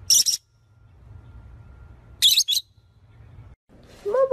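A small parrot giving two short, shrill high-pitched calls, about two seconds apart.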